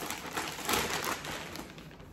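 Clear plastic bag crinkling as it is handled and opened to take a shoe out, loudest about three-quarters of a second in and fading toward the end.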